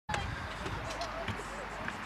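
Scattered sharp knocks and clatters of small wheels rolling and landing on a metal skatepark ramp, with distant voices and a low outdoor rumble.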